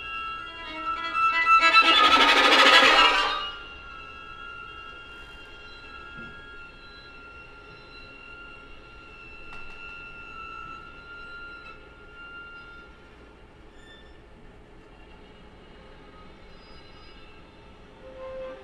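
String quartet playing contemporary music: a loud, noisy bowed burst about a second in, lasting some two seconds, then very soft high notes held steadily for the rest.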